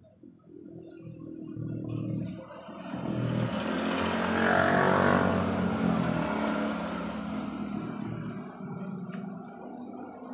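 Motor scooter passing on the road: its small engine grows steadily louder as it approaches, is loudest about halfway through, then fades as it moves away.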